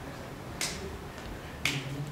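Two short, sharp snaps about a second apart, over low steady room noise.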